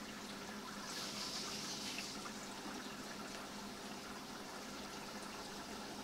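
Faint, steady trickle of running water, with a brief louder hiss about a second in.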